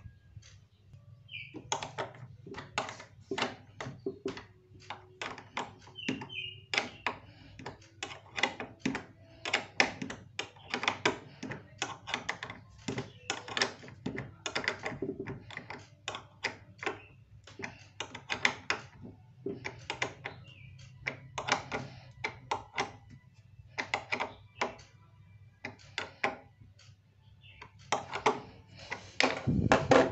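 Small metal bolts and washers being fitted and turned by hand on a refrigerator door's steel hinge plate: irregular light metallic clicks and ticks, several a second, over a low steady hum.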